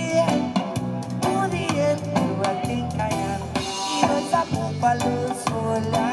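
Live reggae music: a male singer over guitar and drums, with a steady beat.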